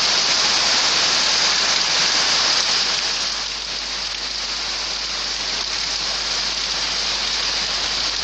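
Heavy rain pouring down steadily, a dense even hiss that eases slightly after the first few seconds.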